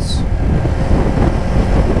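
Steady wind rush on the helmet-camera microphone over the low running of a 2024 Kawasaki Ninja 500's parallel-twin engine, cruising at road speed.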